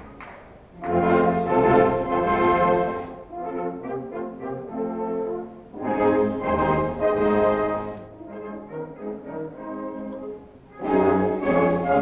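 Wind band of brass and woodwinds playing, loud full-band phrases alternating with quieter, lighter passages; the full band comes in about a second in, again around six seconds and near the end.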